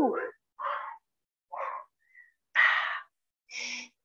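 A woman breathing hard while exercising: four short, breathy exhales about a second apart, after the tail end of a "woo" at the start.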